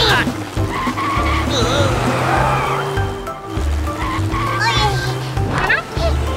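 Cartoon background music with a steady, repeating bass beat, with short gliding cartoon sound effects and wordless character vocal sounds over it.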